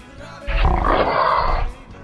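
A loud roar, about a second long, starting half a second in, over rock background music.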